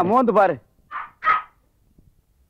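A voice exclaiming with a rising-and-falling pitch, then two short high-pitched cries about a second in.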